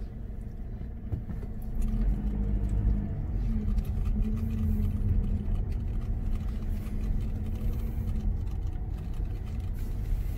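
Car engine and tyre rumble heard from inside the cabin as the car creeps forward and turns at low speed: a low, steady hum that grows louder about two seconds in and wavers slightly in pitch.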